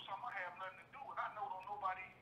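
Only speech: a voice talking over a telephone line, heard through the phone's speaker, thin-sounding with the lows and highs cut off.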